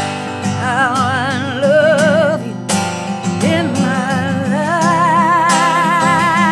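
A woman sings two long held notes with a wide vibrato, without clear words, over a strummed Emerald X7 carbon-fibre acoustic guitar. There are guitar strokes at the start and again between the two notes.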